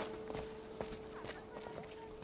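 Faint light taps at an irregular pace over a steady faint hum.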